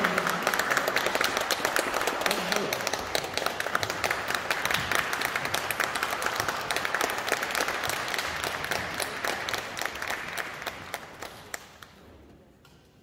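Audience applauding, a dense patter of clapping that fades away over the last two seconds.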